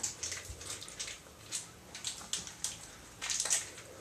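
Small single-dose powder packet crinkling and rustling in the hands as it is worked at to tear it open, with irregular crackles and a denser burst of crinkling a little after three seconds in.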